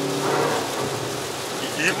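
In-cabin sound of a Hyundai Veloster N's 2.0-litre turbocharged four-cylinder at speed on a wet track. A steady engine note fades about half a second in, leaving an even hiss of tyres on standing water and rain.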